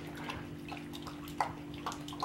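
An English Pointer lapping water from a metal dog bowl: a run of soft, irregular wet laps over a steady low hum.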